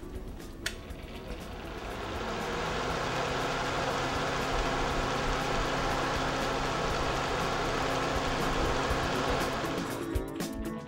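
Small electric desk fan switched on with a click, then spinning up over about two seconds to a steady rush of air with a low hum.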